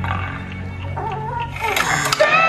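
Animated film soundtrack playing through cinema speakers: soft music with a short wavering, gliding sound about a second in, then the music swelling louder near the end.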